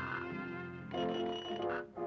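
Cartoon orchestra music: held chords that change to a new chord about a second in, then break off briefly near the end.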